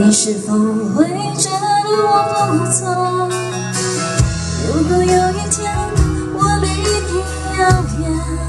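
A woman singing a pop song live into a microphone, backed by a band with guitar and drums; the low end fills in about four seconds in.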